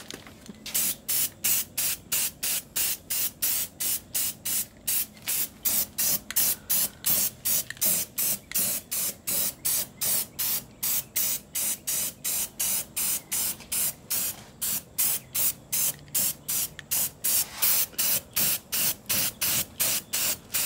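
Aerosol can of black spray paint sprayed in short, quick bursts, a little over two a second, each a brief hiss as the nozzle is pressed and released.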